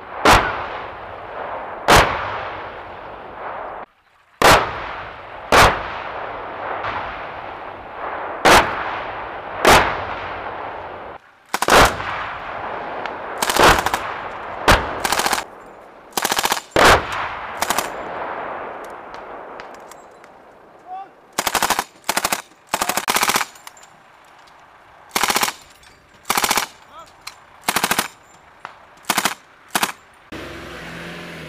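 Vehicle-mounted machine guns firing short bursts, several bursts in quick succession in the second half. In the first half, single heavy bangs about a second or two apart, each trailing a long rolling echo across the range.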